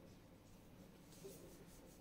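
Faint strokes of a felt-tip marker writing letters on a whiteboard, a little past a second in, amid near silence.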